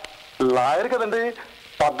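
Speech only: a voice delivering film dialogue in two short phrases.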